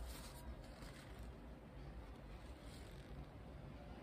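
Near silence: quiet room tone with a low hum, and a faint rustle of a paper towel near the start as a paintbrush is wiped on it.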